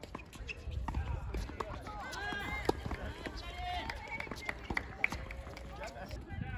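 People talking on an outdoor tennis court, with a few sharp knocks of a tennis ball, the loudest a little before the middle.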